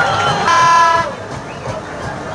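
A horn sounds one steady toot about half a second in, lasting about half a second, over the noise of a football crowd.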